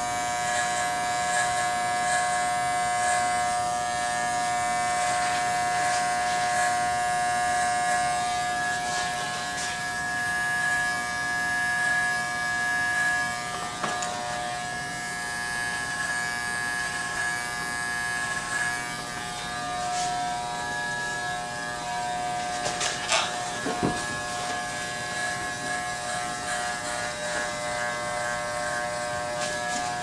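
Electric hair clippers running with a steady buzzing hum as they cut short hair, partly worked over a comb. A few brief clicks come about three-quarters of the way through.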